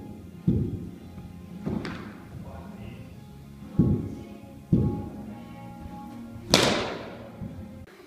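Cricket balls thudding onto an artificial-turf net and being struck with a cricket bat: dull thuds about half a second, four and five seconds in, and sharper bat-on-ball cracks near two seconds and, loudest, about six and a half seconds in. Soft background music runs underneath.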